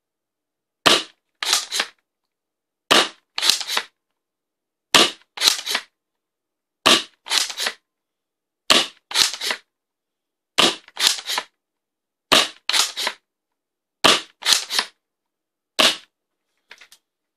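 Worker Seagull spring-powered foam dart blaster fired nine times at about two-second intervals through a chronograph. Each shot comes as a pair of sharp plastic clacks about half a second apart, the sound of priming and firing the spring.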